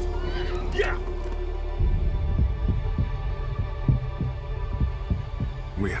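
Film trailer soundtrack: a horse whinnies near the start over a low hum. Then a deep pulsing score starts, low throbs about three a second like a heartbeat, and a man's voice begins at the very end.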